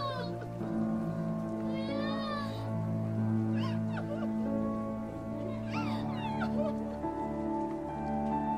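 Soft background score of sustained chords, with three short, high-pitched wavering cries over it, about two, three and a half and six seconds in.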